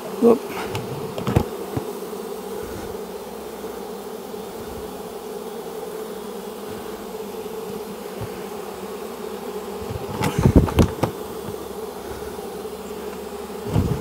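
A mass of honey bees humming steadily, a bucket thrumming with live bees being shaken off comb. A few short knocks from handling break in about a second in and again around ten seconds in.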